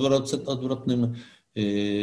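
Speech only: a man talking, then after a short break a long drawn-out hesitation vowel near the end.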